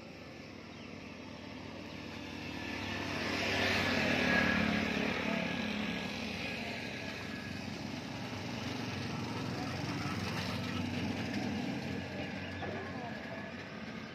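A motor vehicle engine running steadily, growing louder to its peak about four seconds in and then settling to a steady hum.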